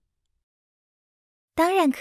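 Silence for about a second and a half, then a voice starts speaking near the end.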